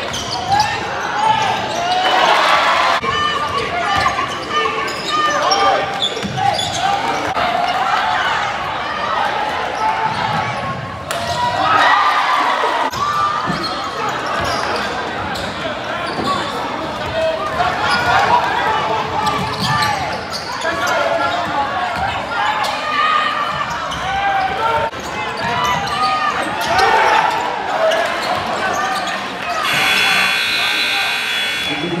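Basketball game sound in an arena: many crowd voices and shouts, with a basketball dribbling on the court. The sound changes abruptly a few times, about 3, 11 and 13 seconds in.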